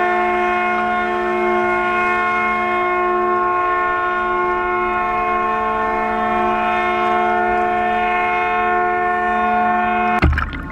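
Ship's horn sounding one long steady blast, several pitches together making a chord, held without a break.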